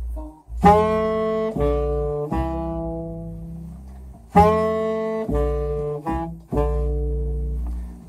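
Saxophone and upright double bass playing jazz as a duo. The saxophone plays two phrases of a few notes, each ending on a long held note, over low bass notes.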